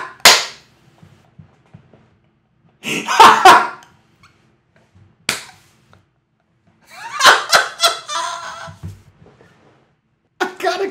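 Short bursts of a man's voice in a small room, with a single sharp crack just after five seconds in.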